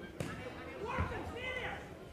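Two dull thuds about a second apart, typical of boxing gloves landing on an opponent, with voices calling out around the ring.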